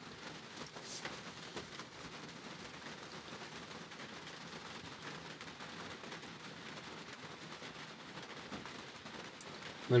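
Rain falling steadily, heard as a faint, even hiss with a few small ticks of drops.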